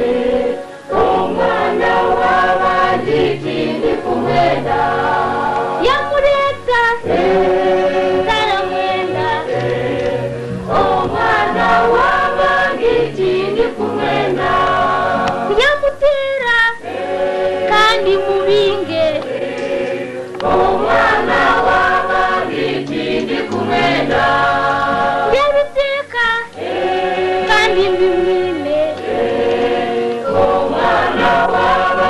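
A choir singing, in phrases a few seconds long with short breaks between them.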